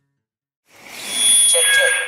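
About half a second of silence, then an edited megaphone sound effect swells in: a loud hiss carrying steady high-pitched feedback whines, with a voice starting under it near the end.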